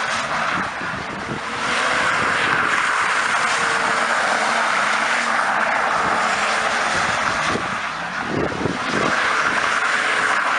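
Chip-tuned BMW E34 525tds turbodiesel straight-six being revved hard while the car drifts, its rear tyres squealing almost without a break. The sound dips briefly about a second in and again around eight seconds in.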